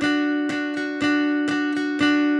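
Steel-string acoustic guitar playing a two-note double-stop on the D and G strings (D and F-sharp, over the D chord), picked over and over about four times a second with a stronger pick on each beat.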